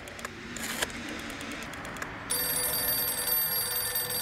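Electronic soundscape: a crackling wash of noise that swells, then a steady cluster of high tones that comes in a bit over halfway through and holds.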